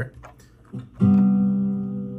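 Sampled Martin D-41 acoustic guitar from the Ample Guitar Martin software instrument, sounded once about a second in and left ringing as it slowly fades.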